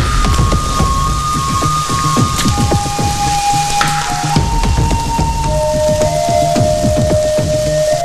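Steady rain falling, laid over background music made of slow, held notes that step from pitch to pitch.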